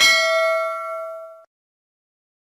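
A single bell "ding" sound effect marking the click on a notification-bell icon. It rings with several steady pitches, fades for about a second and a half, then cuts off abruptly.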